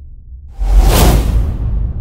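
Cinematic whoosh sound effect over a deep low rumble, part of a logo-reveal intro sting: the whoosh swells in about half a second in, peaks a moment later and fades out over the next second.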